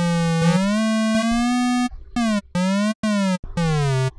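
Surge software synthesizer playing notes with portamento turned up, so each note glides in pitch into the next. First comes a longer note that slides up and holds, then several short notes about half a second apart, each sliding up or down.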